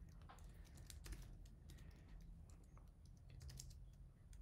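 Faint computer keyboard typing: an irregular run of quick keystroke clicks.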